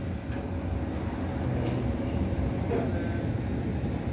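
Steady low background rumble of a room, with faint, indistinct voices.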